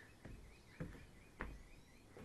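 Footsteps climbing wooden porch steps onto the deck, three soft thuds, with a faint quick run of high bird chirps behind them.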